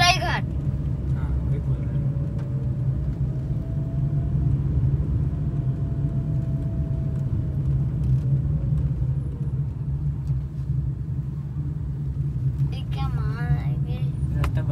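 Steady low rumble of a car's engine and tyres heard from inside the cabin as it drives slowly along a road. A few words are spoken briefly at the very start and again near the end.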